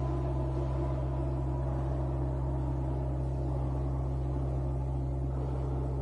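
Steady low drone with fainter held tones above it, like a dark ambient music bed; a higher ringing tone fades out early on.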